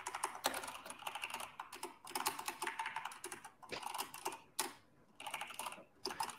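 Typing on a computer keyboard: quick runs of key clicks in bursts, with brief pauses about two seconds in and again near the end.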